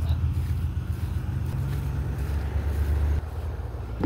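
A steady low mechanical hum, like a running engine or motor, dropping in level about three seconds in.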